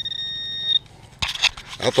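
Handheld metal-detector pinpointer held in a dug hole, sounding a steady high beep that signals metal close by. The beep stops a little under halfway through, and a brief scraping rustle follows.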